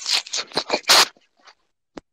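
Scratchy rubbing and crackling from a wireless earbud being adjusted at the ear, heard through its own microphone over a video call. It comes as a quick run of short bursts in the first second, then a lone click near the end before the audio drops out.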